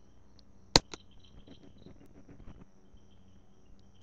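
A single sharp mouse click about a second in, followed by a smaller click, as the slide advances. Behind it is faint background noise with a faint high-pitched pulsing chirp.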